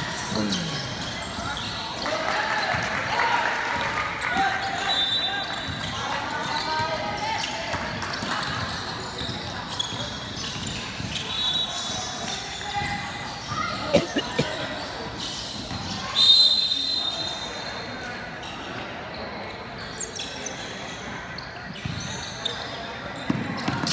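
Basketball game in a large echoing gym: voices of players and spectators talking and calling out, short high whistle blasts three times, the loudest about 16 seconds in, and a couple of sharp ball bounces around 14 seconds.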